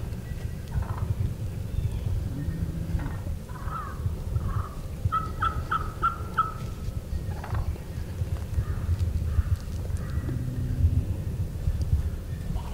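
Turkey yelping: a few scattered notes, then a run of about five short, evenly spaced yelps in the middle, over a low rumble.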